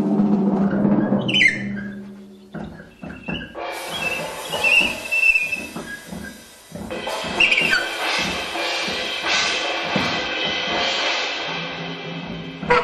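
Drum kit played with soft mallets in free-improvised jazz. A held low pitched tone opens it, then rapid mallet strokes on toms and cymbals swell into a sustained cymbal wash from about four seconds in.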